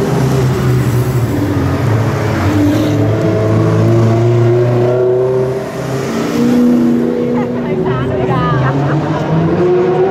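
Sports car engines running as rally cars roll slowly past one after another, first a Lamborghini Gallardo and then a Chevrolet Camaro convertible. The engine notes rise and fall in pitch as the cars move off.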